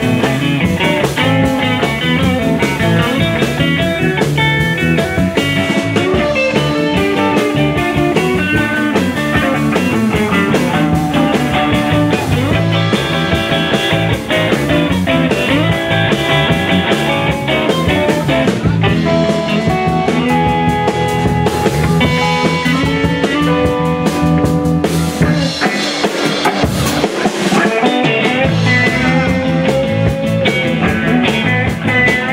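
Live blues-rock band playing an instrumental passage: electric guitars over bass guitar and drum kit, with no vocals. The bass drops out briefly a little before the end.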